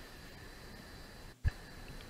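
Faint steady background hiss, broken about one and a half seconds in by a brief drop-out and a short, low thump where the recording is spliced.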